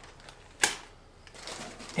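Small valve-spring kit parts and their plastic bags being handled on a workbench: one sharp click about half a second in, with a few fainter ticks and some rustling.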